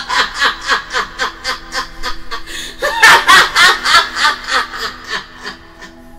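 A woman laughing heartily in a long run of rapid bursts, about five a second. It grows loudest about three seconds in and trails off near the end.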